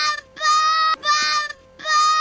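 A young boy screaming in a tantrum: repeated long, high-pitched cries held on one pitch, with short breaks between them.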